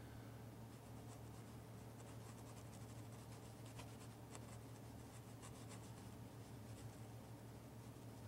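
Near silence: a steady low hum and hiss from the soundtrack, with faint scattered ticks.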